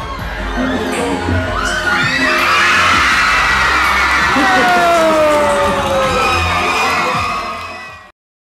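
A large crowd cheering and shouting over music with low thumps, swelling louder over the first couple of seconds, with one long falling shout in the middle; it cuts off suddenly at the end.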